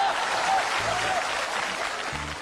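Theatre audience applauding steadily, with brief snatches of a voice over the clapping.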